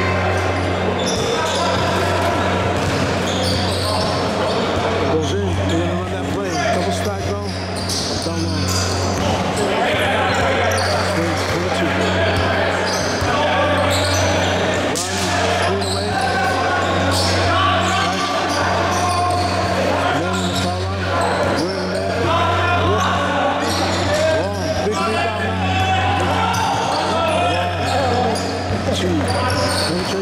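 A basketball bouncing repeatedly on a hardwood gym floor during play, the bounces echoing in a large hall, with players' and spectators' voices and a steady low hum underneath.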